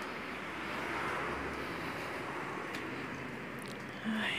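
Steady outdoor background rush that swells slightly about a second in and then eases off.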